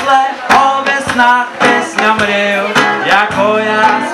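Live acoustic reggae band: acoustic guitar and hand drums keep a steady, even beat, with a wavering sung melody over them.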